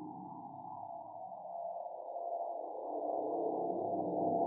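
Live electroacoustic music made with Csound and Max/MSP: a dense, grainy synthesized texture in the low and middle range with a slow downward glide and faint steady high tones above. It swells louder over the last couple of seconds.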